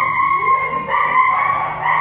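Dog whining in long, steady, high-pitched whines, one running into the next with brief breaks about once a second.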